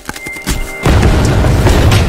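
Logo-reveal sound effects over music: a run of quick ticks and crackles with a thin high tone, then, a little under a second in, a loud, deep boom that rumbles on.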